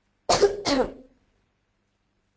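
A woman coughing twice in quick succession, loudly.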